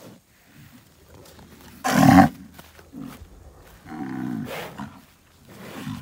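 A young humped bull gives low bellowing grunts while it paws the dirt and rubs its head in the ground. The first, about two seconds in, is a loud breathy burst. A lower drawn-out rumble follows about four seconds in. Low bellowing with pawing and head-rubbing is a bull's challenge or threat display.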